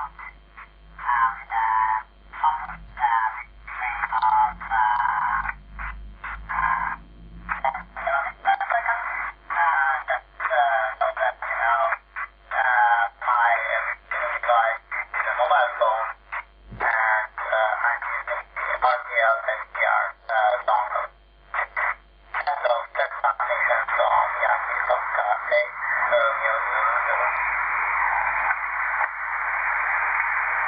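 A voice received over the radio and played through the mobile phone's small speaker: thin, narrow-band speech coming out of the LimeSDR-mini receiver running QRadioLink. Near the end the received audio turns into a denser, steadier rough sound.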